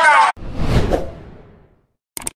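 A whoosh transition sound effect that swells and fades away over about a second and a half. It comes in right after a man's speech cuts off abruptly.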